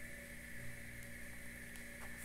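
Steady background hiss and low hum with a constant high tone running through it, and no distinct sound event.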